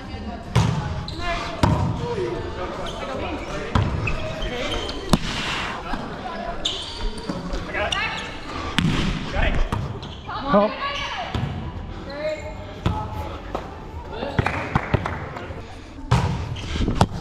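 A volleyball rally in a large, echoing gym: sharp smacks of hands and arms striking the ball and other short impacts, under the voices of players calling across the court.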